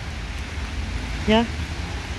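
Steady rain falling on wet pavement, an even hiss with a low rumble beneath it.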